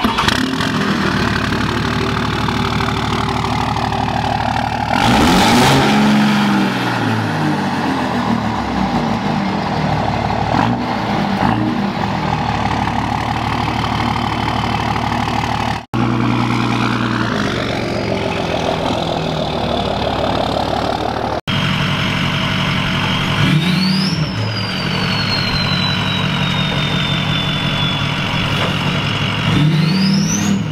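2005 Ram 2500's 5.9 Cummins straight-six turbo diesel running through a four-inch straight pipe, revving about five seconds in and pulling away. After two abrupt cuts, a diesel pickup runs with a turbo whistle that rises sharply and then slowly falls, twice.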